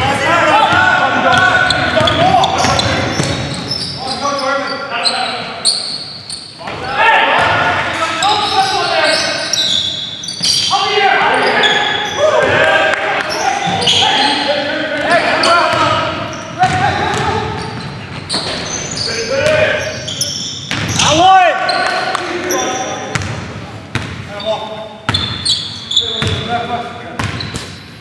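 Basketball game in an echoing gym: a ball bouncing on the hardwood court amid players' shouted, unintelligible calls.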